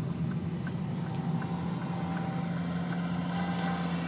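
Car engine heard from inside the cabin, running low and steady as the car waits at a junction. A faint regular ticking of the turn indicator comes through at about three clicks a second.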